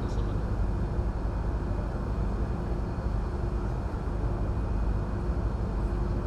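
Steady background noise of a hall: a low rumble and hiss with a faint steady hum, no voice.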